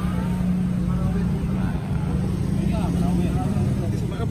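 A motor vehicle engine running steadily, a constant low hum, with faint voices of other people talking in the background.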